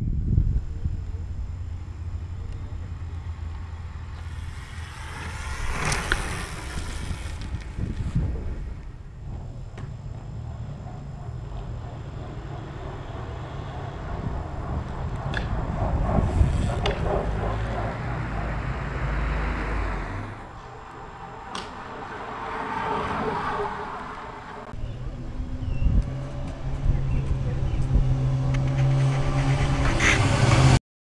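Outdoor road noise with several swells as vehicles pass. In the last few seconds a motorcycle engine runs steadily and grows louder as it comes up the road.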